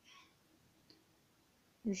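A quiet pause between spoken syllables, with a single faint click about a second in from a plastic pen touching the book page; a woman's voice starts the next syllable right at the end.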